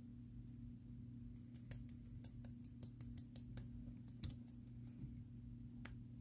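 Fingertips patting liquid foundation onto the face: a quick run of faint light clicks, about five a second, then two single clicks near the end, over a low steady hum.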